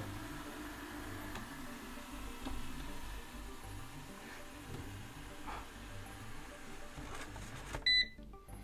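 eufy RoboVac 11S robot vacuum driving on its wheels with the suction off, a faint steady hum, while it seeks its charging base. Near the end it gives one short electronic beep as it reaches the base.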